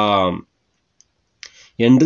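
A man speaking Tamil ends a phrase, pauses for just over a second with only a faint click in the gap, then starts speaking again.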